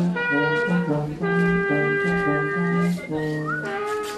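Several brass instruments playing at once. Short repeated low notes sit under longer held higher notes.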